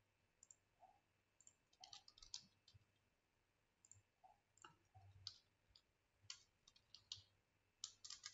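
Faint, irregular clicking of a computer keyboard and mouse as short words are typed and on-screen buttons are clicked, about a dozen clicks with pauses between them.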